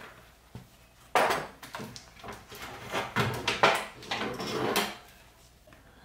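Tools and hard objects being handled and knocked about: a run of irregular knocks and clatters starting about a second in and dying away near the end.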